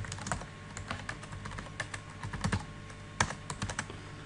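Typing on a computer keyboard: irregular keystrokes, with a quick run of several strokes near the end, as a shell command is entered.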